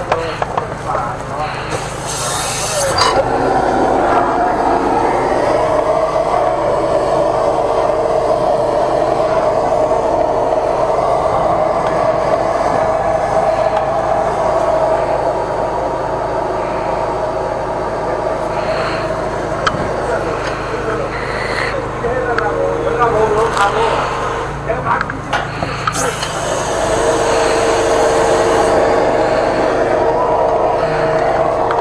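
High-pressure drain jetter running steadily while its hose and nozzle are fed into a floor drain, a continuous mechanical drone. Two brief loud hissing bursts come about two seconds in and again near the end.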